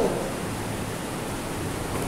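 Steady, even hiss of background noise, with no distinct events, in a pause between sentences.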